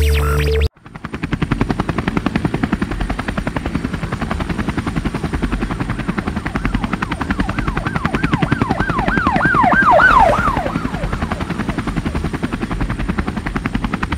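Helicopter rotor chopping in fast, even pulses, starting abruptly just under a second in after the music cuts off. Between about eight and ten and a half seconds in, a quick rising-and-falling whoop repeats about nine times over it.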